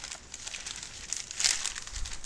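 Newspaper pages rustling and crinkling as they are handled and turned, with a louder rustle about one and a half seconds in.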